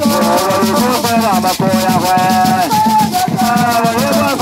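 Agbadza song: a group of women singing together over the fast, even shaking of gourd rattles (axatse), the rattle pattern running continuously beneath several voices.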